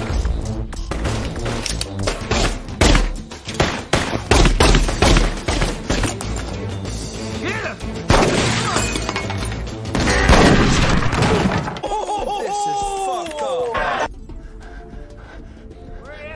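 Action-film shootout soundtrack: a rapid run of gunshots and shattering glass over a dramatic music score, with shouts. The din cuts off sharply about two seconds before the end.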